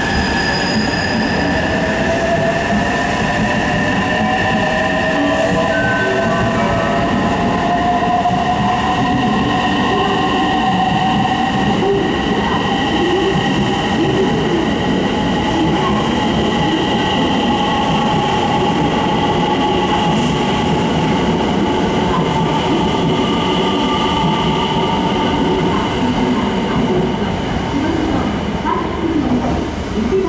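JR West 225 series electric train accelerating away from the platform, its traction motors whining in a tone that rises in pitch over the first several seconds and then holds steady, over the continuous running noise of the passing cars on the rails.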